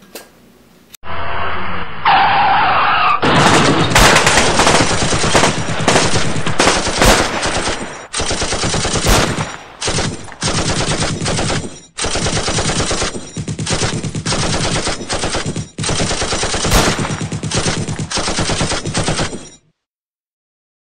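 Sustained automatic gunfire: rapid machine-gun fire that starts muffled about a second in, then runs in long bursts with a few short breaks and cuts off suddenly just before the end.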